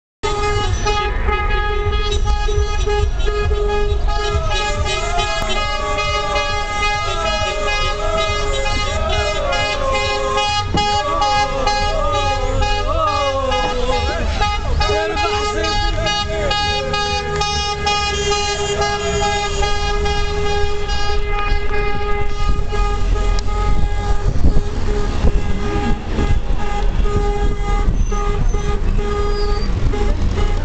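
Car horns blaring in heavy street traffic, one horn tone held almost without a break, over the low rumble of engines. Voices shout over the horns in the middle stretch.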